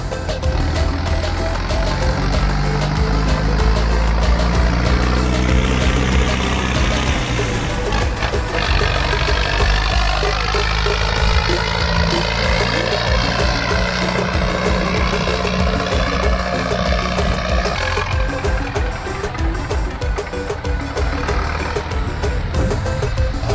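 A vehicle engine running steadily on the road, its pitch rising a few seconds in, with background music laid over it.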